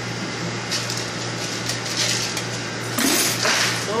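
Plastic cups and dishes clinking and knocking as they are handled at a commercial dish sink, over a steady kitchen machine hum, with a loud short rush of noise near the end.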